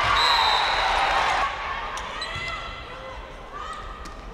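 Indoor volleyball rally in a large gym: players' voices calling out, loudest in the first second and a half, with the ball being struck, one sharp hit about two seconds in.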